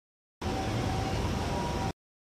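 A short stretch of outdoor city background noise, mostly low rumble with two faint steady tones, that cuts in abruptly about half a second in and cuts off just as abruptly near the end, with dead silence on either side.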